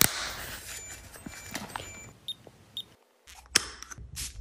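Metal kiss-lock clasp of a small coin purse snapping, with a sharp snap right at the start, then scattered lighter clicks and handling rustle. There is another sharp click near the end.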